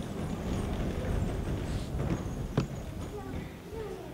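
Hall ambience with a low rumble, rustling and scattered light knocks, and one sharp click about two and a half seconds in.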